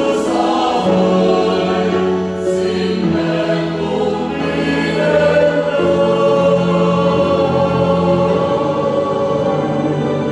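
Mixed church choir of men and women singing a Vietnamese Marian hymn in parts, moving through long held chords.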